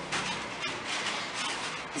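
Soft rustling and scraping as a light polystyrene foam box is lifted and set down on a cloth-covered table.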